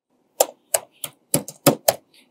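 Typing on a computer keyboard: about eight separate, sharp keystrokes at an uneven pace.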